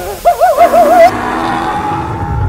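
A person laughing in a wavering, hooting voice, its pitch rising and falling about five times a second, ending about a second in; a steady tone with a hiss follows.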